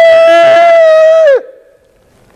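A man imitating a shofar (ram's horn) blast by blowing through cupped hands: one long, steady, horn-like note that dips in pitch as it cuts off about a second and a half in.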